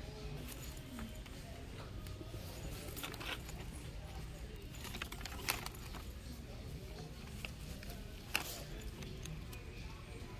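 Plastic mesh zipper pouches being handled in a wire bin: light rustling and small clicks from the mesh, zippers and hanging tags, with two sharper clicks about five and a half and eight and a half seconds in, over a steady low store background.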